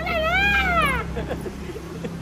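A woman's voice in one long, high-pitched playful cry that rises and then falls, lasting about a second, followed by a few short, quieter sounds.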